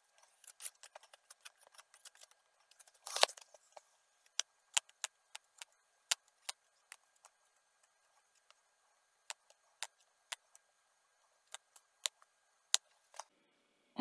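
Edge of a playing card scraping and tapping across a metal heatsink as it spreads a very thin layer of heatsink compound: scattered faint scrapes and clicks, the loudest about three seconds in.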